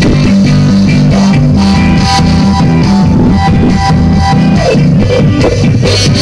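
Live ska band playing, with trombone and saxophone over electric guitar, bass and drums, and a long held note through the middle. The sound is loud and rough, recorded close to the PA speakers.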